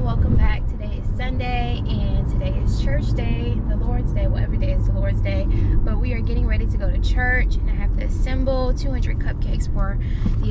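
A woman talking inside a moving car, over the steady low rumble of the car's engine and tyres heard in the cabin.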